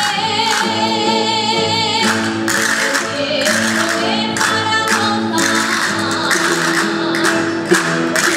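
Aragonese jota played live by a rondalla, a band of plucked strings such as guitars and bandurrias, with a voice singing over the steady dance rhythm.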